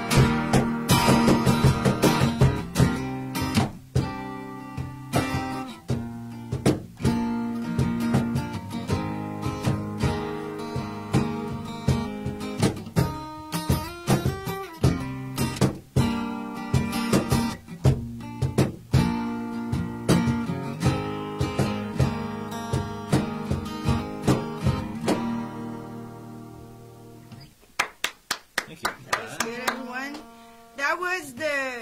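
Acoustic guitar strummed in steady chords, the last chord fading out about 26 seconds in. Near the end come a few sharp hand claps.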